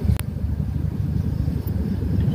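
A steady low rumble with one sharp click about a fifth of a second in.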